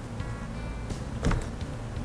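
Faint background music, with one short soft knock about a second and a half in as a plastic cup of acrylic paint is flipped down onto a canvas.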